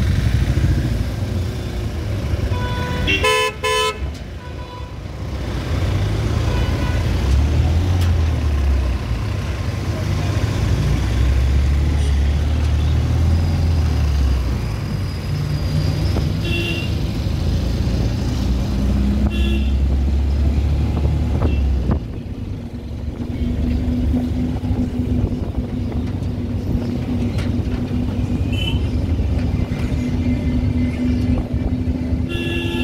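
Road traffic heard from the back of a moving truck: steady engine and road rumble. A loud horn blast comes about three seconds in, and a few short horn toots follow later.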